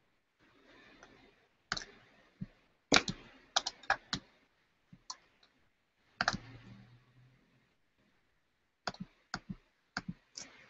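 Typing on a computer keyboard: irregular clusters of sharp key clicks with short pauses between them.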